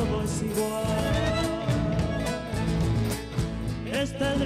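Live band playing an Argentine folk chaya: strummed nylon-string acoustic guitar with drums and bass, under a held melody line that wavers in pitch.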